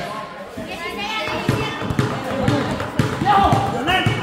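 Basketball bouncing on a concrete court, a run of short thuds, with voices shouting over it.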